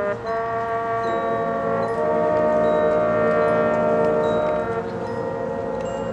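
Marching band brass holding sustained chords, swelling louder about two seconds in and easing off near the end, with chime-like mallet percussion from the front ensemble.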